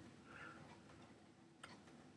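Near silence: room tone, with one faint click late on.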